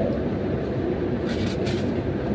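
A steady low rumble in the background, with a brief rustle of paper about a second and a half in.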